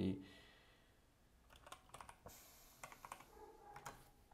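A few scattered, faint clicks of a computer keyboard being typed on, starting about a second and a half in.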